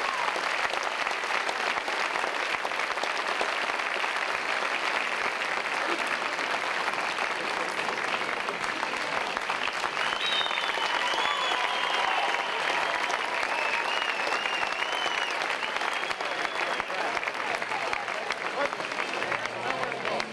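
A large audience applauding steadily, with crowd voices mixed in. A high wavering tone sounds over the clapping for several seconds around the middle.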